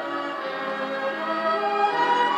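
Instrumental introduction of an Italian pop song: an orchestra with strings holding sustained chords, changing chord about half a second in and again near the end.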